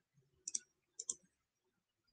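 Faint computer mouse clicks: two quick pairs, the first about half a second in and the second about a second in.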